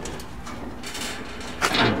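Steel diamond-plate door of a barbecue smoker cabinet being swung open, a quiet metal creak and scrape under low handling noise.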